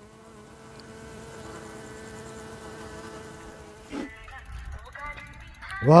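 A flying insect buzzing steadily close to the microphone, with a slight waver in pitch, for about four seconds. About four seconds in there is a soft click, then a fine rapid ticking as a mountain bike rolls past.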